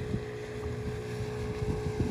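A boat's engine running steadily under way, a low rumble with a thin steady hum, mixed with wind noise on the microphone.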